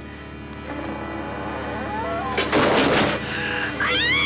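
Horror-film soundtrack: a sustained low drone swelling in loudness, cut about two and a half seconds in by a sudden loud noisy burst, then a woman's high scream starting near the end.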